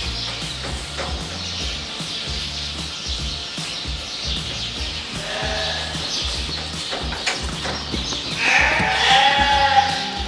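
Sheep bleating over background music with a steady bass beat: a short bleat about five seconds in, then a louder, longer bleat near the end.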